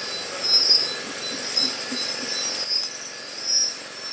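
Crickets chirping: repeated high pulses, roughly one a second, over a faint steady high insect drone.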